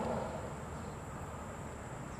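Quiet outdoor ambience: a low, even rumble with a faint steady high-pitched whine throughout.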